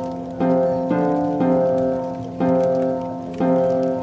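Medieval-style instrumental tavern music: full sustained chords struck about once a second, each starting sharply and then fading. A faint crackling tavern ambience runs underneath.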